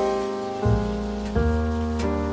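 Slow, gentle background piano music, with a new note or chord about every 0.7 seconds, over a soft, steady hiss.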